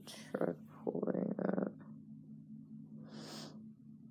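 A voice speaking softly, then a short breathy hiss about three seconds in, over a low steady hum.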